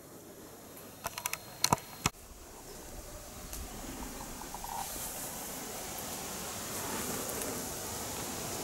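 A few sharp clicks and knocks, then a steady soft hiss of light rain outdoors that slowly grows louder.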